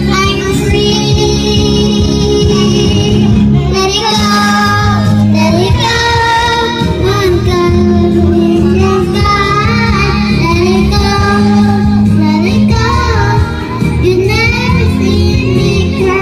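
Young girls singing a song together into microphones over steady backing music, loud throughout.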